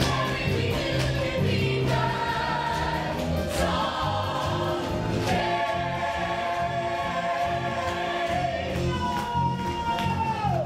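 Stage musical number: a cast sings together in chorus over band accompaniment, holding long notes above a steady, repeating bass line.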